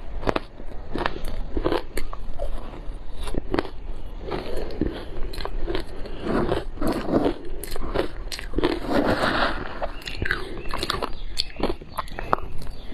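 Crushed ice dusted with matcha and milk powder being bitten and chewed close to the microphone: a dense, irregular run of sharp crunching cracks.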